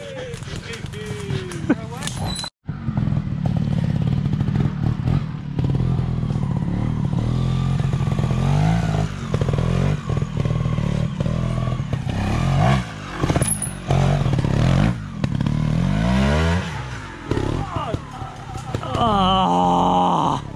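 Trials motorcycle engine running as it is ridden through a woodland section, the revs rising and falling in repeated short blips. A brief cut to silence comes about two and a half seconds in.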